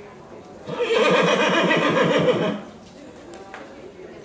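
An Oldenburg horse whinnying once: a loud call of about two seconds, starting a little under a second in.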